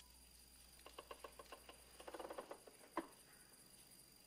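Near silence: faint night insects chirring steadily at a high pitch, with scattered soft clicks, a quick run of taps about two seconds in, and one sharper click about three seconds in.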